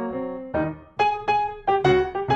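Background piano music: a melody of single struck notes, each ringing and fading, a few notes a second.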